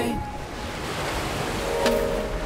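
Ocean surf: a steady wash of breaking waves, with faint music notes coming back in near the end.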